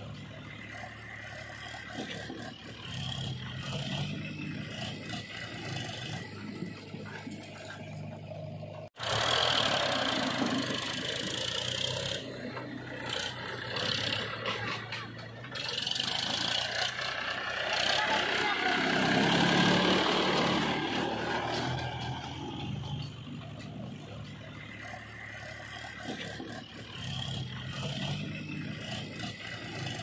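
Diesel tractor engine of a Powertrac 434 DS Plus running steadily while hauling a loaded trailer of soil. It is louder after a cut about nine seconds in, and its speed rises and falls near the two-thirds mark. Voices are heard faintly underneath.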